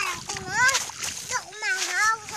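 A small child's high-pitched voice making several short wordless calls and babbles, with splashing and splattering of wet mud and water as the child moves through a flooded rice paddy.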